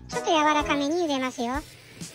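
A high-pitched voice speaking Japanese, pausing briefly near the end.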